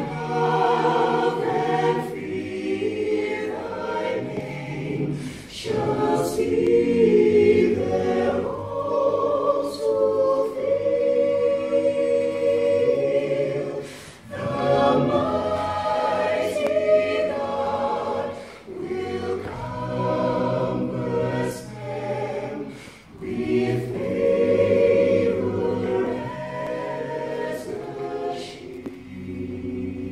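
Mixed choir of women's and men's voices singing unaccompanied in several parts, in phrases with a few brief breathing pauses between them.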